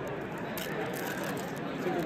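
Background chatter of other people's voices over a steady hum of room noise, with no clear foreground sound.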